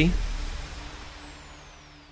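The tail of a produced sound effect dying away: a low steady hum under a faint high whistle that slides slowly down in pitch, fading out over about two seconds.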